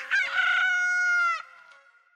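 A rooster crowing one cock-a-doodle-doo: two short notes, then a long held note that drops at the end and stops about a second and a half in.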